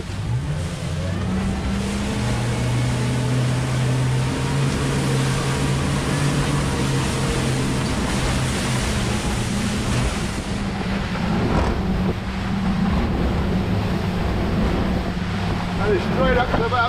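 Twin Mercury Verado 350 hp outboard engines accelerating hard, their note rising in the first couple of seconds, then running steadily at speed. Heavy rushing noise from wind and water spray comes with them.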